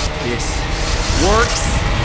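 Film sound effect of an electric power charge-up: a heavy low rumble with crackling electricity. About a second in, a man's voice rises in a short shout.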